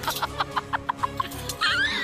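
A woman giggling in a quick run of short, high laughs, over steady background music; near the end a high, swooping exclamation of her voice.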